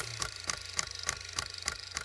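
Electronic end-card sound effect: a steady low hum with a sharp tick repeating about three times a second.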